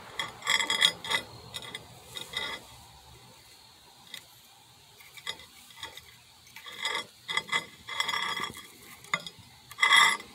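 Several short bursts of hard scraping and clinking on the microwave's glass turntable and the fused aluminium-oxide mass, with quiet gaps between.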